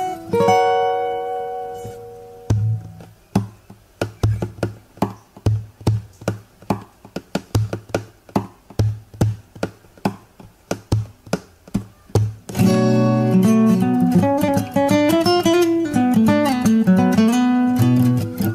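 Fingerstyle steel-string acoustic guitar. A chord rings out and fades, then comes a steady beat of percussive slaps and taps on the guitar body for about ten seconds. About two-thirds of the way through, a loud melodic lead line with bent notes starts.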